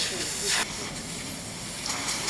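A steady hiss of background noise in a pause between words, with a few faint fragments of voice near the start.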